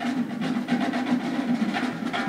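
Marching band playing: drums beating a steady rhythm under a held chord from the wind instruments.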